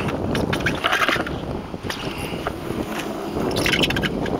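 Wind buffeting the microphone over water lapping at a small fishing boat's hull, with a few short knocks and rustles from handling on board: near the start, about a second in, and near the end.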